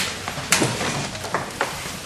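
A few light clicks and knocks as a refrigerator door is opened and bottles in its door shelf are handled, with a sharper click at the start and another about half a second in.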